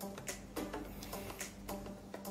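Quiet upbeat electronic dance background music with a steady beat.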